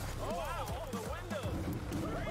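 Faint voices from the embedded video over background music, with a steady low hum underneath.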